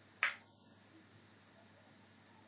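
A single short, sharp click about a quarter second in, over a faint steady hiss and low hum.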